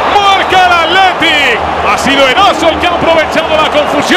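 Male Spanish football commentator speaking continuously, with no other sound standing out.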